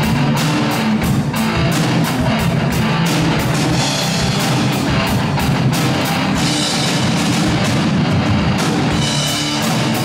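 A live rock instrumental jam: a drum kit playing a steady beat together with an electric guitar.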